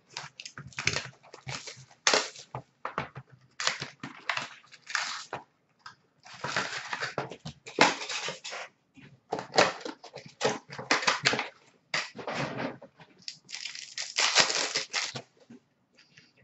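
Plastic wrapping and packs of trading cards being torn open and crumpled by hand: irregular crinkling and ripping in bursts, with short pauses between.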